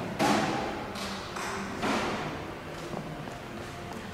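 A few irregular thumps and taps, the loudest just after the start and others about a second in and near two seconds, each trailing off in the echo of a large hard-surfaced hall.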